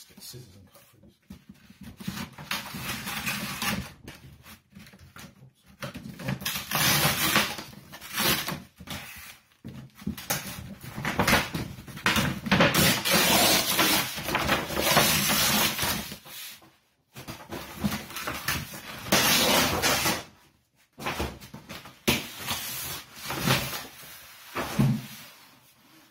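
Brown packing paper crinkling and rustling as it is torn and pulled off a cardboard box, with the cardboard sliding and knocking. It comes in loud irregular bursts with brief pauses.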